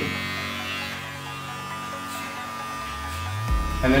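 Wahl Senior electric hair clippers running with a steady hum while cutting a fade, with a deeper, louder hum coming in near the end.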